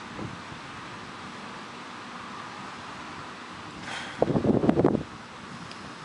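Steady wind on the microphone on an open field, with a small bump just after the start. About four seconds in comes a loud, short cluster of low thumps and knocks lasting under a second.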